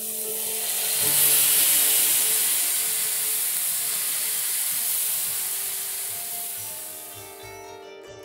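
Meat sizzling in a frying pan: a steady high hiss that swells over the first second, fades slowly and cuts off suddenly at the end. Faint sustained musical tones sound beneath it.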